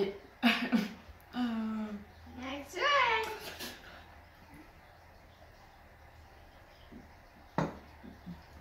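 A child's voice making drawn-out sounds and exclamations without clear words over the first four seconds, then quiet apart from a single short knock near the end.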